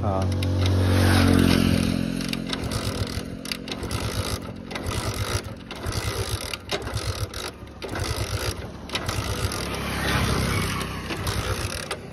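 Hero motorcycle's single-cylinder engine being kick-started over and over with the choke on, turning over in short chugging bursts about once a second without catching: the bike won't start. A louder steady drone swells and fades in the first two seconds.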